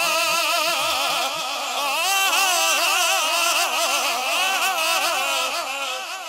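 A male naat reciter singing a Punjabi devotional kalam through a microphone, in long drawn-out phrases with wavering, ornamented notes and no clear words; the voice eases off slightly near the end.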